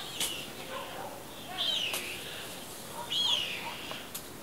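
A bird's short high chirp, repeated three times about a second and a half apart, with fainter lower chirps in between.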